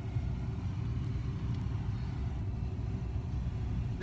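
Steady low rumble of a car heard from inside the cabin, unchanging throughout.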